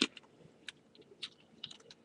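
Light plastic clicks and taps from LEGO bricks as a small LEGO Creator Mini Dumper model is handled and turned in the hands: a handful of faint, separate clicks, several close together near the end.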